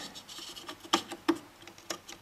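Small clicks and scrapes of a metal IF transformer can being pressed and worked into its mounting on a National NC-300 tube receiver's chassis, with a few sharper clicks near the middle and just before the end.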